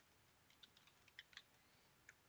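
Computer keyboard typing: a handful of faint, separate keystrokes spread irregularly, with near silence between them.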